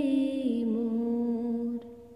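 A single voice holding a long sung note at the end of a bhajan phrase. The note steps down in pitch about half a second in and breaks off near the end.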